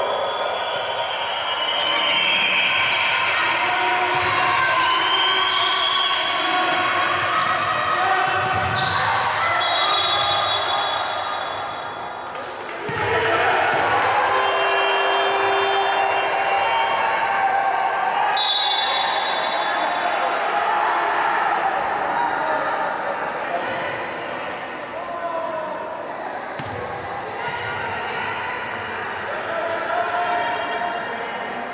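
Basketball game sounds in an indoor hall: the ball bouncing on the hardwood court and voices calling out, echoing in the large space.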